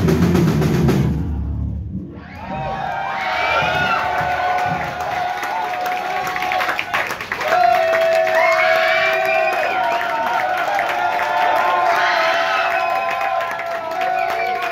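A heavy rock band plays loud with drums and bass and breaks off about two seconds in. After that, electric guitar feedback rings on as overlapping high tones that waver and slide.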